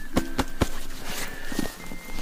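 Footsteps in hillside undergrowth: a quick run of sharp steps early on, then softer steps and rustling.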